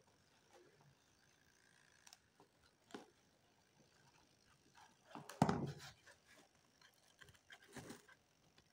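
Handling noise from wires being moved about in a cardboard box: scattered light clicks and a louder rustling knock about five and a half seconds in.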